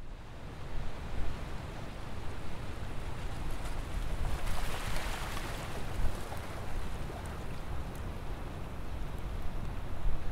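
Wind buffeting the microphone on open water, a fluttering low rumble, with a wash of water noise that swells and fades around the middle.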